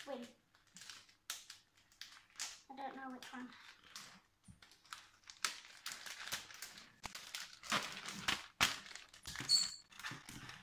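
Clear plastic bag of shredded paper crinkling as it is handled and shaken, in short irregular rustles.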